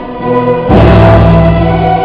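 Orchestra with a large string section playing sustained notes; about two-thirds of a second in, the full ensemble comes in loudly on a held chord, heavy in the bass.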